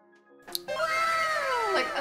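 A long pitched call starting about half a second in and sliding down in pitch for over a second, meow-like, over quiet background music.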